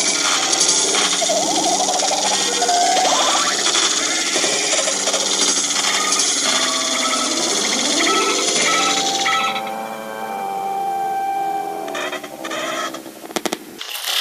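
Quirky, cluttered electronic logo music mixed with a jumble of odd cartoon sound effects. About ten seconds in it thins out to a few held tones, and a few sharp clicks come near the end.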